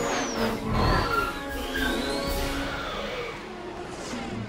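Orchestral film score over the sound effect of a speeder flying past: high whines that glide down in pitch, then rise and fall again, loudest about a second in.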